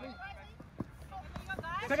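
People shouting: faint calls in the background, then a close voice starts a loud shout near the end.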